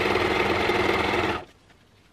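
Freshly serviced Bernina 1008 sewing machine stitching steadily, then stopping about one and a half seconds in.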